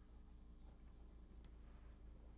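Chalk writing on a blackboard: a few faint taps and scratches over a low, steady room hum.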